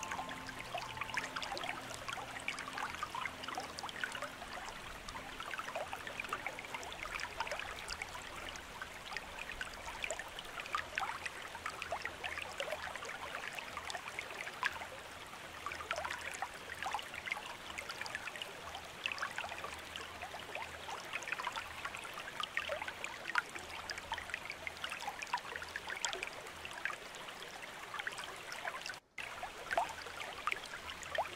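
Small waterfall splashing and trickling over rocks: a steady wash of water with many small splashes. A few soft sustained music tones fade out in the first seconds, and the sound drops out for an instant near the end.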